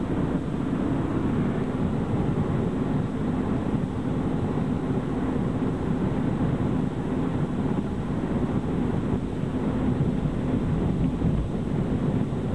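Steady road and engine noise inside the cabin of a 1998 Honda Civic hatchback at highway speed, mostly a low rumble with a faint steady hum.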